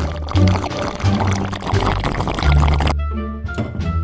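Drink sucked noisily through a straw from a stainless steel tumbler for about three seconds, stopping near the end, over steady background music.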